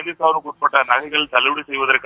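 Speech only: a voice talking continuously in quick, unbroken phrases.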